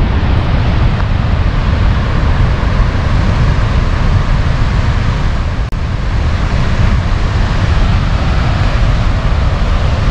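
Steady rush of water gushing from a dam outlet into the river below, with wind buffeting the microphone. This is lake water being let out to flow down the river, not the turbine discharge. The sound drops out for an instant about halfway through.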